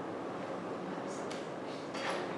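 Lecture-hall room ambience: a steady background hum with two faint brief clicks a little after a second in.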